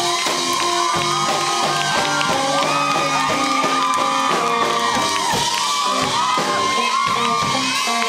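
Live electric blues played by a band: electric guitar with bent notes over a repeating low note line and a steady drum beat. People in the room shout and cheer over the music.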